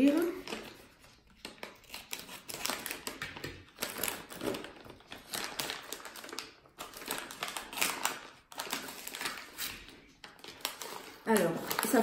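Scissors snipping across the top of a plastic snack pouch, then the pouch crinkling as it is pulled open.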